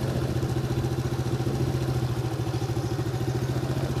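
Small motorbike engine running steadily with an even, rapid pulsing, heard from the moving bike.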